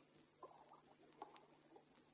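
Near silence with a few faint clicks and a soft low rustle.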